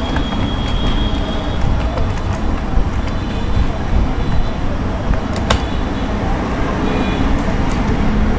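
Steady low background rumble with a few faint, separate clicks of a computer keyboard and mouse as text is typed and edited.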